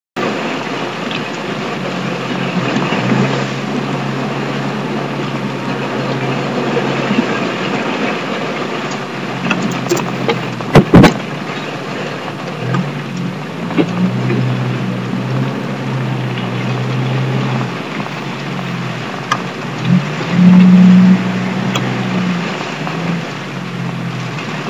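Off-road car's engine running steadily as it drives over muddy ruts, with two sharp, heavy knocks about eleven seconds in and a louder, higher engine note around twenty to twenty-one seconds.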